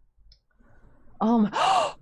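A person's voice about a second in: a short "um" followed by a breathy sigh.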